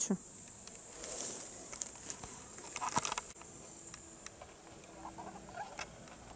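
Footsteps and rustling through grass as someone walks, heard as irregular light patter, busiest in the first half. A steady high chirr of insects runs behind.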